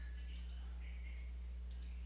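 Computer mouse button clicked faintly, two quick pairs of clicks, over a steady low electrical hum.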